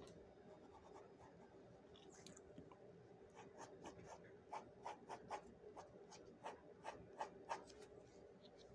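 Faint scratching of a pen tip on paper while sketching a face, in short strokes in quick succession from about three seconds in.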